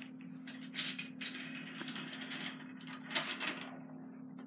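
Battery-powered toy train on a plastic track, its small motor giving a steady whir. Several short plastic clicks and scrapes come from the train and track being handled, the loudest a little after three seconds in.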